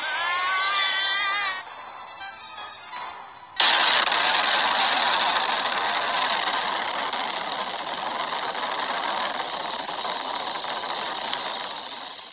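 A man screams for about a second and a half. About three and a half seconds in, a nuclear explosion goes off with a sudden blast, and its long, noisy roar slowly fades over the next eight seconds.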